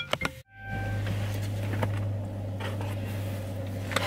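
Car engine idling, heard from inside the cabin as a steady low hum. It comes in after a brief dropout about half a second in, with a few short electronic tones around that moment.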